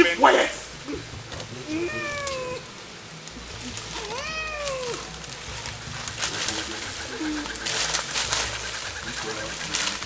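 Drawn-out, meow-like vocal calls: one slides down in pitch about two seconds in, another rises and then falls about four seconds in. Later come short crackling strokes, like feet rustling through dry undergrowth.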